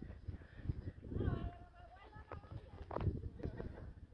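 Faint voices calling out at a distance, with a few sharp clicks about two and three seconds in.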